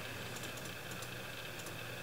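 Faint keystrokes on a computer keyboard, several light clicks in quick succession, as a browser page is zoomed in. A steady low hum runs underneath.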